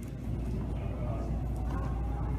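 A steady low rumble, with a faint voice murmuring under it.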